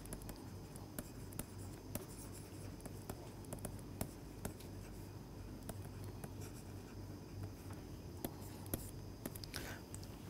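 Stylus writing on a tablet: faint, irregular taps and scratches as words are written out, over a low steady hum.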